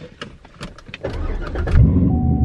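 Chevrolet C7 Corvette's 6.2-litre V8 starting, heard from inside the cabin: a few light clicks, then cranking from about a second in, with the engine catching loudly near the end.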